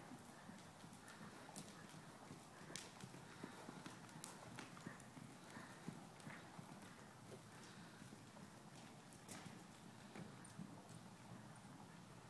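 Faint hoofbeats of a horse moving over the soft dirt footing of an indoor riding arena, with scattered light thuds and clicks.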